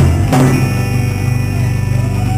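Live rock band playing an instrumental passage: sustained electric guitar and bass notes with the drum kit, with a couple of sharp drum hits in the first half second.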